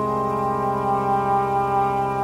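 Ambient live music: a sustained, brass-like keyboard synthesizer chord held steady, with an upper note stepping down about half a second in.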